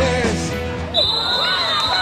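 A music bed fades out, then live futsal court sound comes in: a long referee's whistle blast lasting about a second and a half, over children shouting in a hall.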